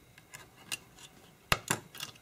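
Plastic back plate of a Sony a5100 camera's display panel being pulled apart by hand, giving a few small clicks and snaps as it comes loose. The sharpest snap comes about one and a half seconds in.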